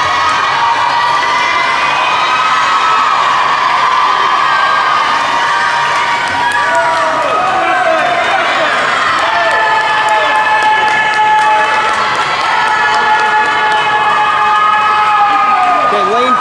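Swim-meet crowd of teammates and spectators cheering on swimmers mid-race: many young voices yelling together, with long drawn-out shouts overlapping throughout.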